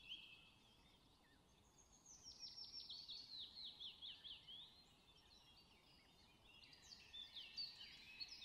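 Near silence with faint bird chirps in the background: a run of quick falling chirps in the middle, and a few more near the end.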